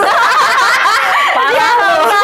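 Two women laughing together, loud and continuous.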